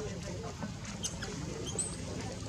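Baby macaque squeaking: several short, thin, high-pitched squeaks in quick succession.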